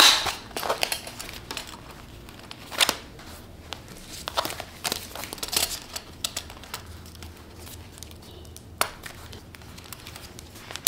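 Clear plastic cash envelopes crinkling and rustling as they are handled and turned on the rings of a leather six-ring binder folio, with a few sharper clicks: one at the start, one about three seconds in and one near the end.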